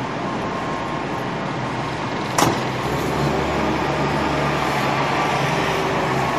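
City street traffic noise, with a single sharp knock about two and a half seconds in. Just after it, a nearby vehicle's engine comes in close, running with a low, steady hum.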